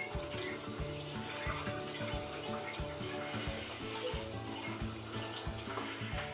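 Water running steadily from a tap as slime-sticky hands are washed, with background music and a steady beat underneath.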